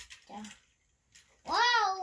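A young child's voice: a brief murmur, a short pause, then a loud, high-pitched, drawn-out exclamation of "Wow!" starting about one and a half seconds in.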